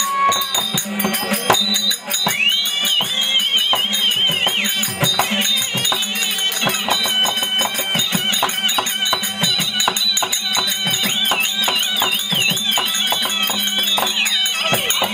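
Therukoothu folk-theatre ensemble music: a high, wavering, ornamented melody on a small reed pipe over a steady harmonium drone. Hand-drum strokes and a constant fast jingle of small cymbals and bells run underneath. The pipe melody comes in about two seconds in.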